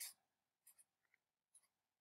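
Near silence with a few faint, short strokes of a felt-tip marker drawing on graph paper.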